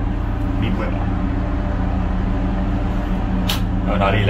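Lifeboat's inboard diesel engine running steadily, heard from inside the enclosed cabin, with a sharp click about three and a half seconds in.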